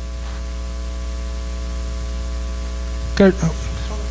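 Steady electrical mains hum, a low drone with a few fixed overtones, with a brief spoken word about three seconds in.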